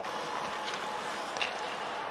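Ice hockey arena ambience during live play: a steady hiss of the rink, with a couple of faint taps about a second apart.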